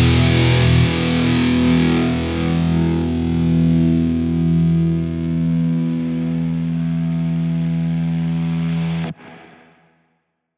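A distorted electric guitar chord left to ring out with a wavering sustain, slowly fading. It is the closing chord of an old-school thrash death metal track, cut off sharply about nine seconds in with a brief fading tail and then silence.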